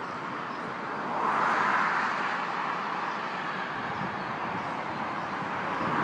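Road traffic on a major road below: a steady rush of tyres and engines, swelling as a vehicle passes about a second in.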